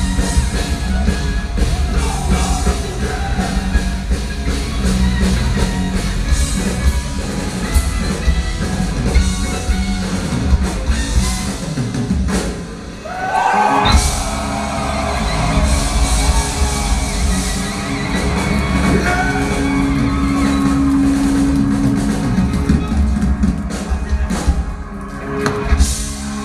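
Live power-symphonic metal band playing loudly with drums, guitars and sung vocals, heard from within the audience. The music dips briefly about thirteen seconds in, then comes back in with a rising glide.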